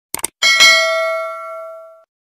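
Subscribe-animation sound effect: two quick mouse clicks, then a notification bell chime struck about half a second in, which rings out and fades away over about a second and a half.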